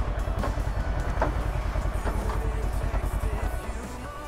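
Kawasaki Versys motorcycle engine idling with an even low pulse.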